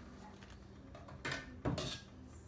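Two brief clatters of a lid against a frying pan, a short one about a second and a quarter in and a louder one near the end.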